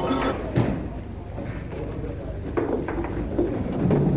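Indistinct voices in a few short bursts, over the steady low hum and hiss of an old film soundtrack.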